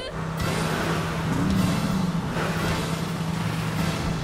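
Car engine running with a steady drone, briefly revving up in the middle.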